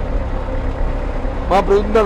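Steady low rumble of a bus engine running, heard from inside the bus.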